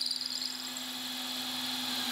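Cordless drill running at a steady speed, boring a hole into the edge of a solid oak board; a constant-pitched motor whine that holds steady throughout.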